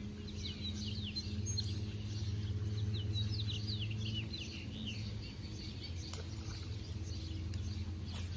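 Small birds chirping in quick, short notes, thick for the first half and sparser after. Underneath runs a steady low hum, and two faint clicks come in the second half.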